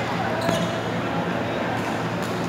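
A badminton racket striking a shuttlecock: one sharp crack about half a second in and a fainter one near the end, over voices and a steady low hum in a large hall.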